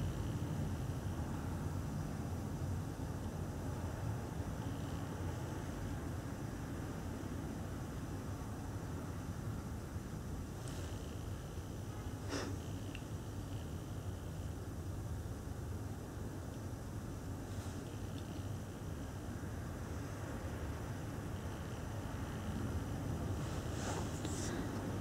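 Quiet room tone with a steady low hum, broken by a few faint, brief noises a little past halfway through.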